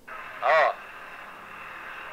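A steady telephone-line hiss with a thin, phone-filtered sound, and one short laughing 'ha' about half a second in.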